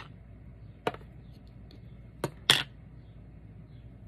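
Three short plastic clicks and taps from a Distress Oxide ink pad's plastic case being handled and opened on a craft mat: one about a second in, then two close together a little past two seconds, the last the loudest.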